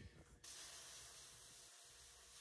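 Compressed-air blow nozzle hissing faintly and steadily, starting abruptly about half a second in: air blown onto freshly tack-welded metal to cool it.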